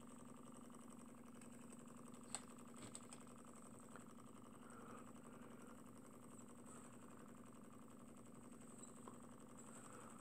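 Small homemade Stirling engine with a Pyrex test-tube hot end running on an alcohol-burner flame: a faint, steady mechanical hum from the spinning flywheel and pistons, with one sharp click about two and a half seconds in.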